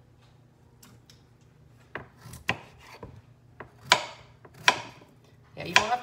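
Kitchen knife chopping peeled potatoes on a wooden cutting board: about six sharp, irregular knocks of the blade hitting the board, starting about two seconds in.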